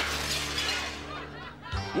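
Crash of a dropped serving tray of dishes and glasses hitting the floor and shattering: one sharp impact, then clattering that fades over about a second and a half. Background music plays underneath.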